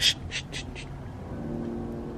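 An animal overhead gives four quick, harsh, high-pitched sounds within the first second. A faint steady low hum follows.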